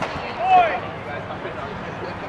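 A single short shouted call with a rising-then-falling pitch about half a second in, over steady background voices at a ballpark.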